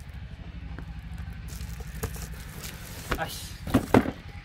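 A shrink-wrapped cardboard box being handled: faint clicks and plastic rustle, then a few sharp knocks in the last second as the box is picked up and set against the others, over a steady low hum.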